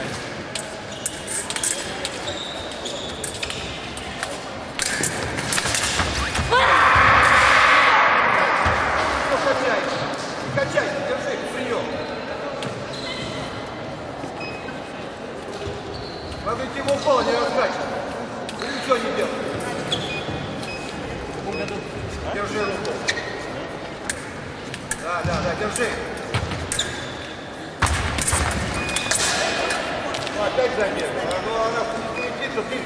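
Sabre fencing footwork on a wooden gym floor: quick steps and lunges with sharp knocks and blade contacts scattered throughout, ringing in a large hall. A loud held sound of about two seconds stands out some seven seconds in, and voices are heard now and then.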